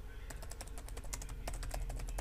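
Typing on a computer keyboard: a quick, uneven run of light key clicks.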